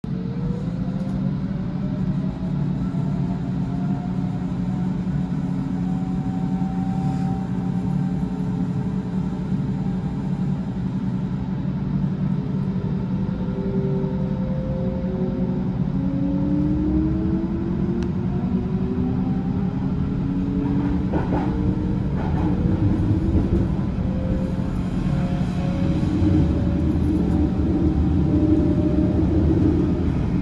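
Berlin S-Bahn electric trains pulling away: a steady low hum with the whine of traction motors rising in pitch as they accelerate, first early on and again from about halfway, with a few sharp clicks in between.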